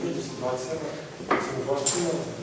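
Speech with two short sharp knocks, about a second and a quarter in and again near the end.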